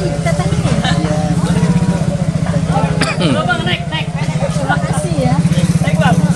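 A small engine idling close by, a steady low hum with a fast, even pulse, with people talking over it.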